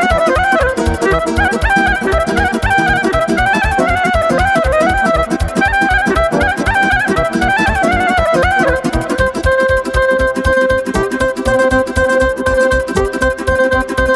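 Instrumental Romanian folk dance music over a fast, steady beat: a violin plays quick melodic runs with plucked-string accompaniment. About nine seconds in, the running melody gives way to a held chord over the same beat.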